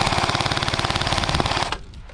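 Airsoft gun firing a long full-auto burst of rapid, evenly spaced shots that cuts off abruptly near the end.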